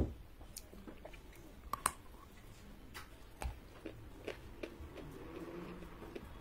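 A person chewing a mouthful of red clay with the mouth closed. There is a loud crunch right at the start, then sparse small crunches and clicks.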